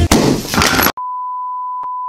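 A short noisy burst as the music ends, then about a second in a steady single-pitched electronic beep tone starts and holds, broken by one faint click.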